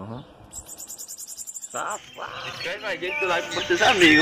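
Bananaquit singing a high, rapidly pulsed buzzy trill for about a second. About two seconds in, voices and music take over.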